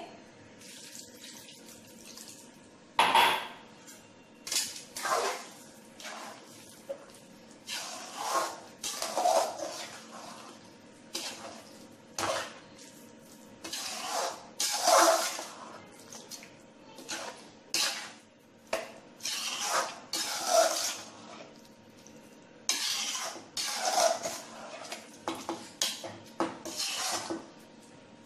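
A utensil scraping and knocking against a steel kadai as thick pav bhaji is stirred and mashed with added water, in irregular wet strokes a second or two apart.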